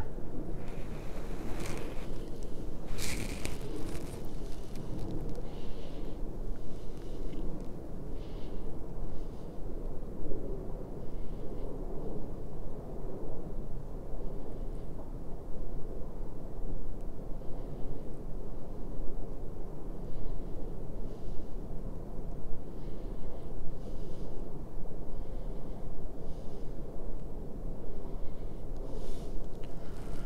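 Wind buffeting an outdoor microphone: a steady low rumble, with a few short rustles near the start.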